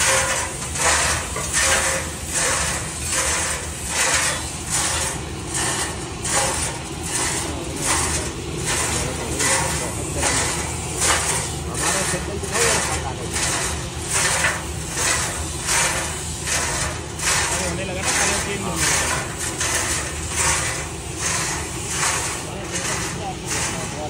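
Gas-fired rotating drum roaster running: a steady low burner roar under a regular rushing swish, about three every two seconds, as the drum turns.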